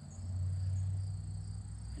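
A steady, high-pitched chorus of insects such as crickets, over a low rumble of wind on the microphone.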